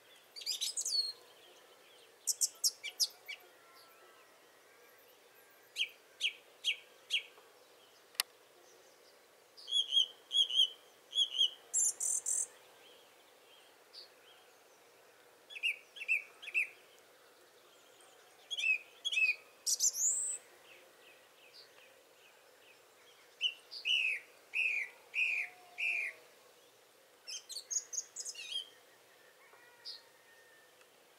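Songbirds singing in a dawn chorus, with separate phrases every few seconds. Many phrases are short runs of three or four repeated high notes.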